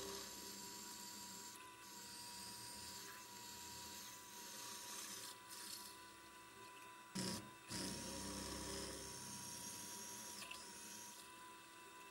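Vertical mill spindle running with a faint steady whine while a twist drill bores through steel plate, pre-drilling the ends of a slot. A brief louder burst comes about seven seconds in.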